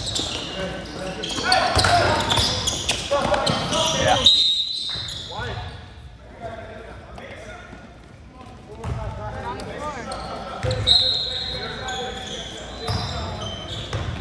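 A basketball bouncing on a sport court, with scattered shouting from players and spectators, echoing in a large gym.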